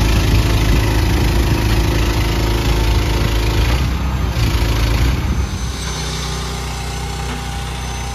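Combine's diesel engine running close by with a deep steady rumble, easing to a quieter, steadier hum about five seconds in.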